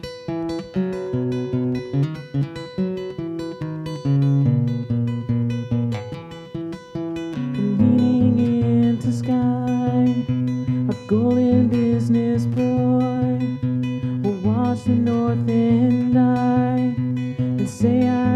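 Acoustic guitar played without words: a run of single picked notes for about the first seven seconds, then louder, fuller strummed chords from about eight seconds in.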